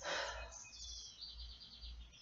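Faint bird song: a quick run of high, repeated chirps starting about half a second in. A short breathy sound at the very start.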